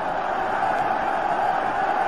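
Football stadium crowd, a steady din of many voices with no single call standing out, heard through an old TV broadcast's audio.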